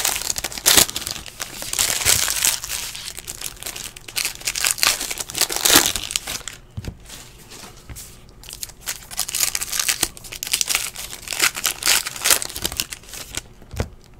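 Foil trading-card pack wrapper being torn open and crinkled by hand: a dense run of crackling rustles, with a quieter lull about halfway through.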